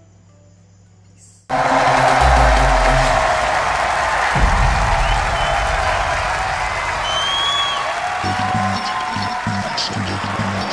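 After a second and a half of quiet, an arena crowd suddenly starts cheering and applauding, with a couple of deep booming music hits and a whistle beneath it.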